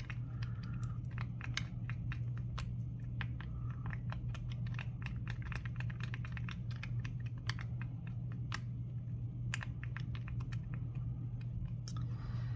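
A wooden craft stick stirring resin and green pigment in a small plastic cup, giving quick irregular clicks as it taps and scrapes against the cup. A steady low hum runs underneath.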